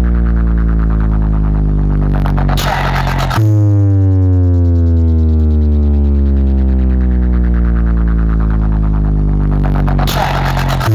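Competition DJ track played loud through a DJ sound box: a deep, buzzing synth bass whose pitch slides slowly downward. About two and a half seconds in, a short noisy sweep breaks it off, then the falling bass starts again.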